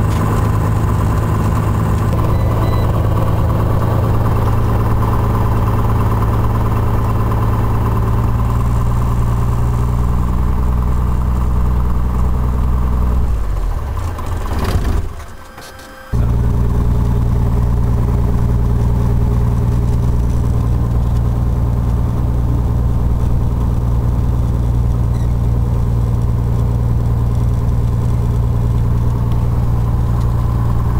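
F1 EVO Rocket homebuilt aircraft's piston engine and propeller running steadily as the plane taxis, heard from inside the cockpit. About halfway through, the sound fades away for a couple of seconds, then comes back abruptly.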